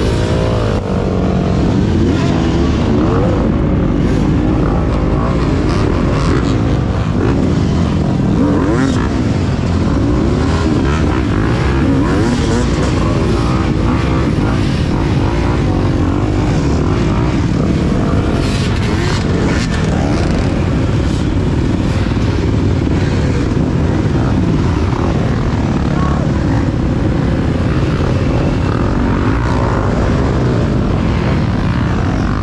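Several dirt bike engines revving up and down over one another as riders work their bikes up a steep, rutted hill climb. The camera rider's own engine is close by.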